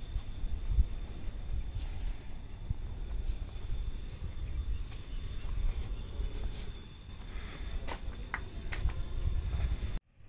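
Low, uneven rumbling outdoor background noise with a faint steady high-pitched whine, and a few sharp clicks near the end.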